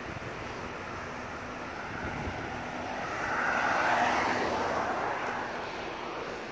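A passing vehicle: its rushing noise swells to a peak about four seconds in, then fades away.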